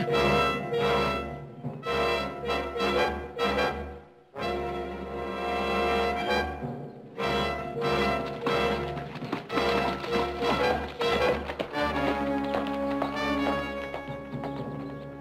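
Dramatic orchestral score led by brass, playing loud, punchy phrases with a brief break about four seconds in, then settling into quieter held chords near the end.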